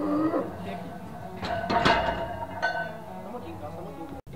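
Men shouting and straining during a heavy barbell bench press, with a loud sharp knock about one and a half to two seconds in as the loaded bar goes back into the rack uprights.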